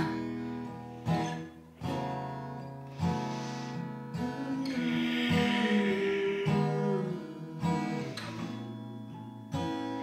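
Acoustic guitar played live, chords strummed and plucked about once a second and left to ring out between strokes.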